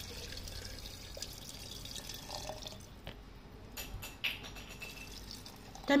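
Pickling brine poured into a glass jar of olives, a soft steady pour and trickle, with a few light knocks about three to four seconds in.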